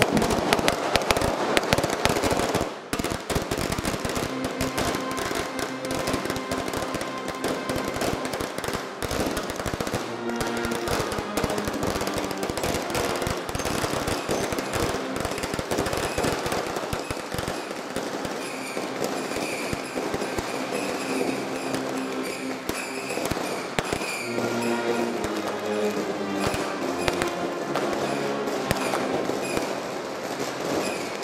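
A string of firecrackers crackling in rapid, dense bursts for roughly the first half, thinning out after that, over a procession band playing a slow march that carries on throughout.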